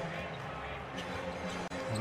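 Basketball game sound from an NBA arena court: a couple of sharp ball bounces on the hardwood over steady arena music.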